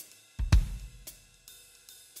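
Big-band music in a drum-only gap: a bass-drum and cymbal hit about half a second in, then a few soft hi-hat ticks.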